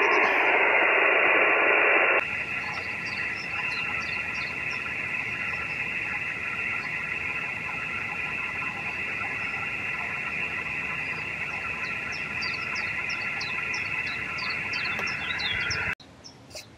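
Receiver audio from an Icom transceiver's speaker listening to the QO-100 satellite's FT8 segment: hiss cut off at the top of the passband, with several faint steady tones from FT8 signals. The hiss drops in level suddenly about two seconds in.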